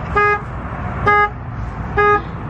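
A truck's horn honking in short, even beeps about once a second: the vehicle's alarm has been set off by accident.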